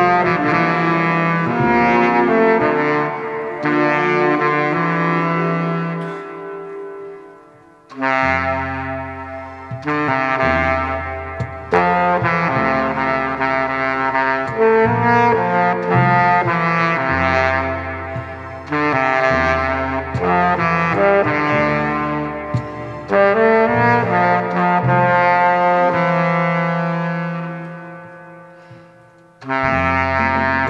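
Baritone saxophone playing a slow, legato solo melody of long held notes over a saxophone ensemble accompaniment with a low bass line. The music dies away between phrases twice, about seven seconds in and again near the end.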